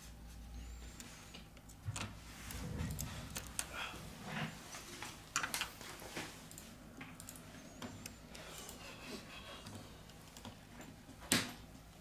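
Faint, scattered clicks and taps of steel tweezers and fingertips on a smartphone's small plastic and metal parts as a circuit board is set into the frame, with one sharper click near the end.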